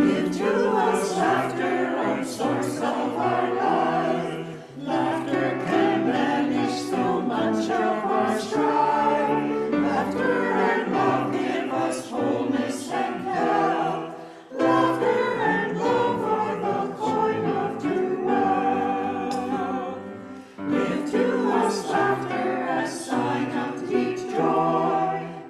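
Church choir singing an anthem, phrase after phrase, with a few short pauses between phrases.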